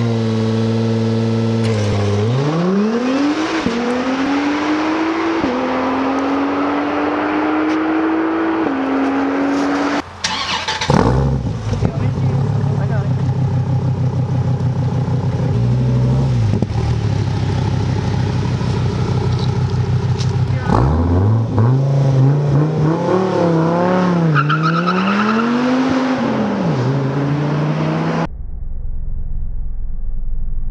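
Sports car engines: a 2017 Acura NSX accelerating away through three upshifts, its pitch climbing and dropping back with each shift. After a sudden cut about ten seconds in, a Dodge Viper ACR's V10 runs steadily, then is revved up and down several times before the sound changes abruptly to a lower rumble near the end.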